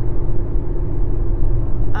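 A car being driven: steady low engine and road rumble heard from inside the cabin, with a faint steady hum above it.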